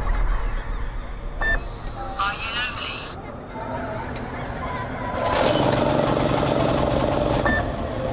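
A small engine starts up about five seconds in and keeps running with a rapid, regular beat, louder than anything before it. Before it there is a low rumble, a single click and a short warbling sound.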